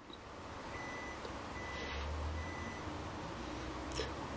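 A low, steady rumble with a faint high-pitched beep sounding briefly three times, about a second apart.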